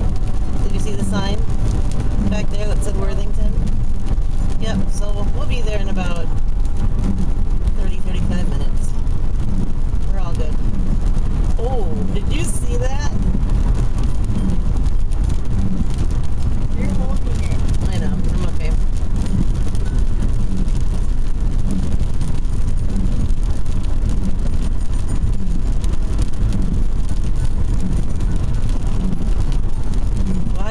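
Steady low rumble of a car's engine and tyres, heard from inside the cabin while driving, with faint voices talking now and then underneath.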